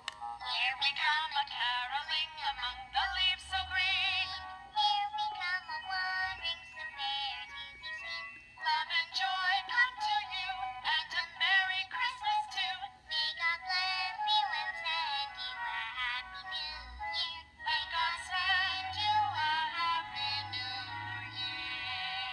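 Musical light-up snowman-carolers Christmas keepsake ornament playing a sung carol through its tiny built-in speaker: thin voices with no low end, with two short breaks between phrases.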